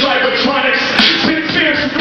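A rapper's voice through a microphone over a hip-hop backing beat, with regular deep kick-drum hits.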